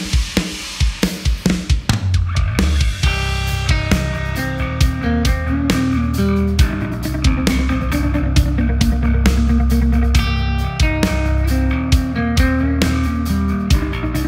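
Electric guitar playing a song through an MXR Carbon Copy Deluxe analog delay in the effects loop of a Mesa Boogie JP-2C amp, from a Dunable Yeti guitar on its lower-output second pickup voice. Drums run throughout, and a low bass comes in about two seconds in.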